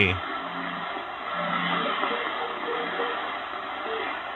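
Shortwave radio reception on 6050 kHz through a Malahit-clone DSP SDR receiver's speaker: a faint voice buried in steady hiss and static. The signal stays weak because raising the RF gain makes the receiver overload on stronger stations.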